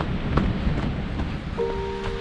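Wind buffeting the microphone as a low, rumbling noise, with a few faint clicks. About one and a half seconds in, a held chord of background music comes in.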